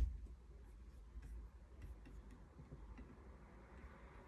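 A single low thump right at the start, then faint, scattered light ticks and clicks over quiet room tone: the small sounds of a person moving while throwing punches in the air.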